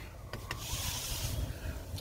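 Rustling, rubbing hiss of a handheld phone camera being moved, with two light clicks about half a second in.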